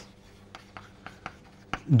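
Chalk writing on a chalkboard: a few light, short taps and scratches of the chalk as letters are written.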